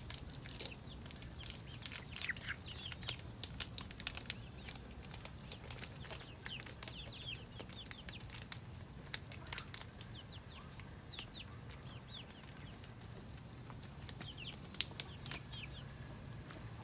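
Young chickens peeping and chirping in many short, repeated calls that slide downward, with scattered sharp clicks of their beaks pecking at a cucumber.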